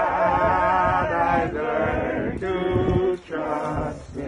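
A few voices singing a hymn together in long held, wavering notes.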